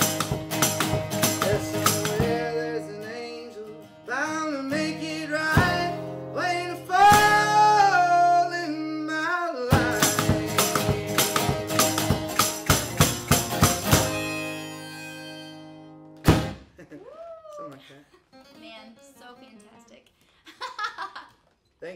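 Acoustic guitar strummed in a steady beat with rhythmic foot percussion, and a harmonica playing a bending melody through the middle stretch. The song fades and ends on a final hit about four seconds before the end, followed by a few faint words.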